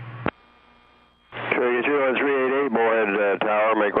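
Air traffic control radio: one transmission ends with a click a moment in, about a second of quiet follows, and then a controller's voice comes over the radio, thin and cut off at the top.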